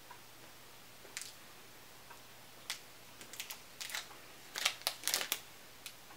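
Crinkling of the wrapper as it is peeled off a small square of Nib Mor dark chocolate: a few scattered crackles about a second in, growing denser and louder over the last three seconds.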